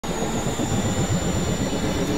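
Experimental synthesizer noise drone: a dense, churning low rumble with a thin, steady high whine above it.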